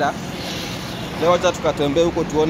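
Steady noise of road traffic, then speech starting about a second and a half in.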